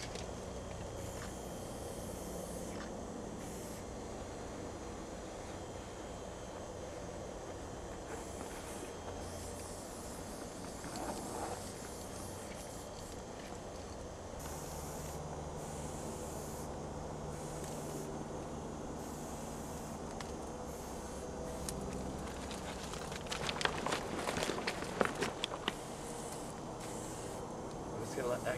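Aerosol spray-paint can hissing in repeated bursts of a second or two as paint goes onto the train car, over a low steady rumble. About three-quarters of the way in comes a quick run of sharp clicks and rattles.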